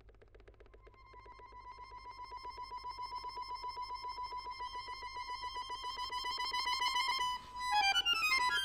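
Chromatic button accordion holding one high note in rapid, even pulses, swelling steadily from very soft to loud. Near the end the sound breaks off briefly before new notes come in.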